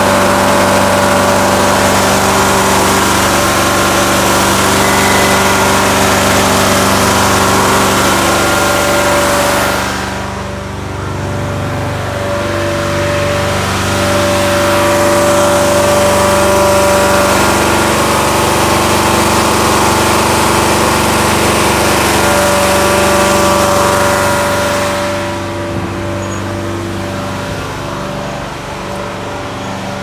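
A Kohler-engined Inferno carpet-cleaning truckmount running steadily, with an even engine tone and a hiss above it. The hiss drops away about ten seconds in and again near the end.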